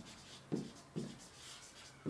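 Marker writing on a whiteboard in a small room: a few short, faint strokes about half a second apart.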